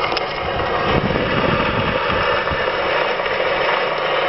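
Edison Diamond Disc phonograph (Model L35) running a disc before the music comes in: a steady surface hiss from the stylus in the groove, with a few soft low thumps.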